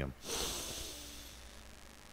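A man breathing out hard through the nose into a close microphone, a hissy exhale that starts just after his words and fades away over about a second and a half.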